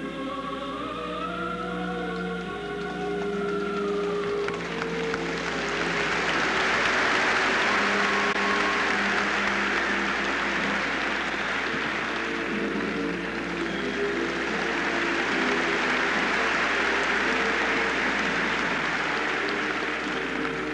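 Background music playing throughout; from about four seconds in, audience applause swells up and continues loudly over the music.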